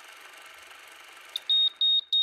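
A steady hiss, then, about one and a half seconds in, short high electronic beeps start, repeating about three times a second and much louder than the hiss.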